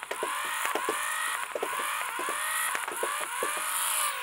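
Flywheel motors of a 3D-printed full-auto Nerf Rival blaster spinning with a steady whine, while foam balls are fed through and fired in short, irregular bursts of sharp clacks.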